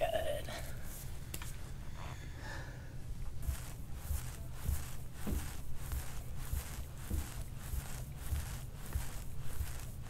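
A metal soft-tissue scraping bar drawn in quick short strokes over the oiled skin and muscle of a man's back, about three scrapes a second from a few seconds in. The strokes sound over a low steady room hum.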